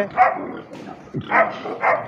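Three short animal calls, the loudest about a second and a half in.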